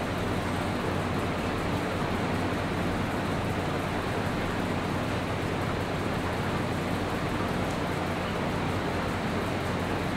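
Steady, even hiss with a constant low hum underneath, unchanging throughout, with no distinct knocks or voices.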